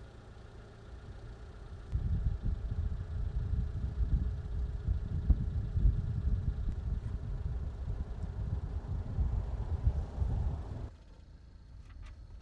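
Wind buffeting the microphone outdoors: an uneven, gusty low rumble that swells about two seconds in and cuts off abruptly near the end.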